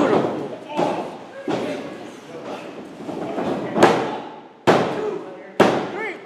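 Sharp thuds and slaps on a wrestling ring's mat, five in all, the last three about a second apart and the loudest two near the end. The last three fit a referee slapping the mat for a pin count.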